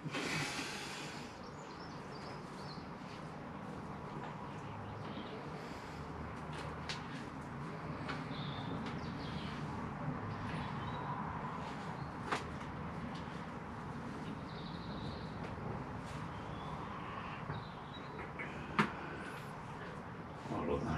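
Faint rustling and handling of moss and potting soil being pressed onto a bonsai pot, with a couple of sharp clicks, one midway and one near the end.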